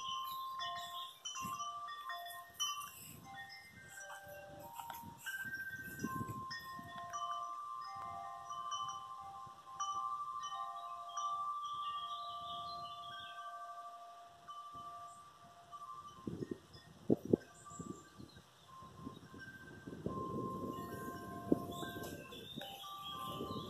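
Chimes ringing: clear tones at several pitches sounding one after another in an irregular pattern, some held for several seconds. Short low rustling noises come in near the end.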